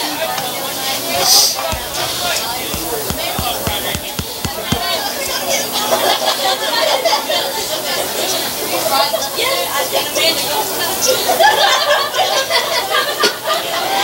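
Several voices of spectators and players talking and calling out, overlapping in a general chatter, with a few sharp knocks in the first few seconds.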